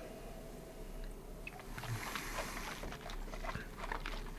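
Faint sips and mouth sounds of two people tasting whisky from nosing glasses, over a steady low hum.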